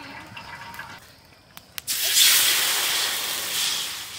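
Water poured from a pitcher into a hot, dry wok: a couple of small clicks, then about two seconds in a sudden loud hiss as the water hits the hot metal and flashes to steam, easing off slightly toward the end.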